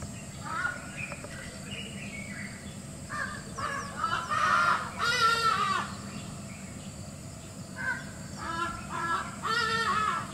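Birds calling in bursts of short, repeated notes, loudest around the middle, with a longer downward-curving call about five seconds in.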